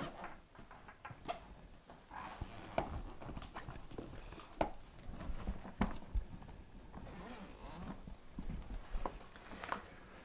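Faint handling of an eBags TLS Mother Lode Mini 21 wheeled duffel: scattered knocks as the bag is laid on its back on a table, with rustling fabric and the main zipper being drawn open.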